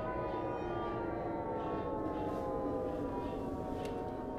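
A sustained drone of several stacked tones that slowly slides down in pitch, like a siren winding down: horror sound design in the film's soundtrack.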